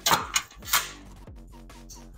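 Three sharp clatters of small hardware being handled on a wooden workbench, all in the first second, over electronic background music with a steady, repeating beat.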